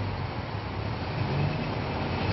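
Motor vehicle engine idling close by, a steady low rumble with road-traffic noise around it.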